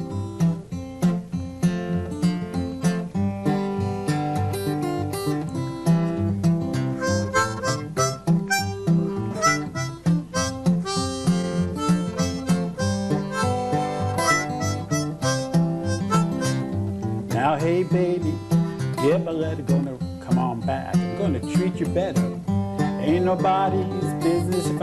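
Steel-string acoustic guitar fingerpicked with an alternating thumb bass, playing an instrumental blues intro, with a harmonica playing along. From about two-thirds of the way in, the harmonica bends its notes up and down.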